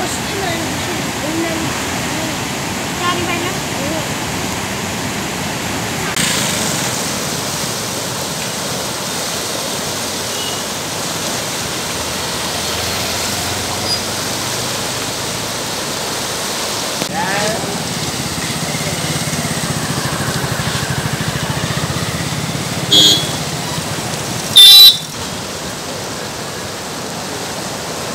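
Rushing floodwater from a reservoir in flood: a steady rush of muddy water pouring over a weir and running fast down the swollen river. Faint voices are heard in the first few seconds, and near the end come two loud short blasts, the second about a second long.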